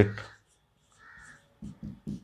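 A marker squeaking briefly against a whiteboard about a second in, as a word is written, between short bits of a man's speech.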